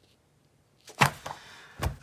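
Comic books being handled after a near-silent second: a sharp slap of paper about a second in, a few small clicks, and a duller knock near the end as a comic is laid flat on the table.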